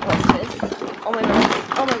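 A woman's voice exclaiming over the light clatter of plastic makeup compacts and containers being shifted by hand in a packed cardboard box.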